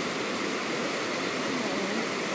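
Steady rush of a flowing river.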